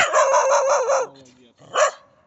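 Six-month-old spaniel giving one loud call of about a second with a wavering pitch, then a second short call near the end.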